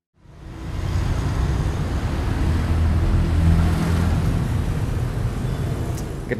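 Steady outdoor background noise, a strong low rumble under an even hiss, fading in quickly at the start.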